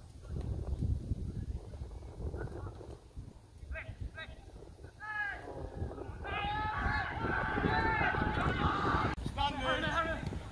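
Footballers' shouts carrying across an open pitch: a few short calls, then several voices calling at once from about six seconds in, over a steady low rumble on the microphone.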